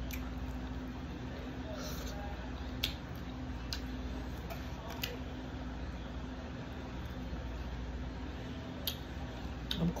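Hands picking sushi out of a clear plastic takeout tray: a handful of short, sharp clicks of the plastic, spread out, over a steady low hum in the room.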